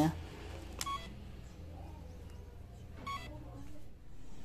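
Two short electronic beeps about two seconds apart, over a faint low hum.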